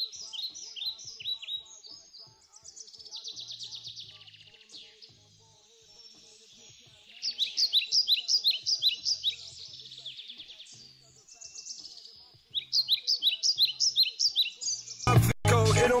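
Birds chirping in quick series of short, high, downward-sliding notes and fast trills, over faint soft music with occasional low bass notes. About fifteen seconds in, a loud hip hop beat kicks in.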